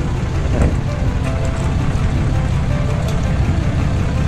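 Ram 3500 pickup truck's engine running low as it pulls a fifth-wheel trailer slowly past, with background music over it.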